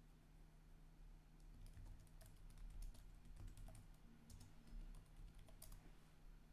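Faint, irregular clicks over a low steady hum, close to silence; the clicks start about a second and a half in and stop just before the end.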